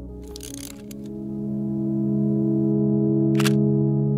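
Sustained ambient music chords that swell after about a second, with camera sound effects over them: a short camera handling or winding noise ending in a click about half a second in, then a single sharp shutter click near the end.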